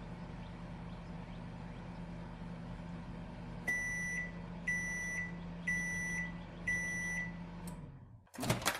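Countertop microwave oven running with a steady low hum, then beeping four times, about a second apart, to signal the end of its cooking cycle; the hum cuts off near the end.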